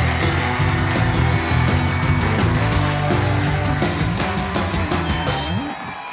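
A live band playing up-tempo, rock-style music led by guitar. It drops out briefly near the end and comes straight back in.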